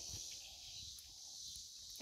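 Quiet outdoor background: a faint steady hiss with a low rumble, and no distinct sound standing out.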